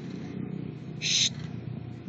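A husky puppy gives one short, high-pitched yelp about a second in, over a steady low rumble.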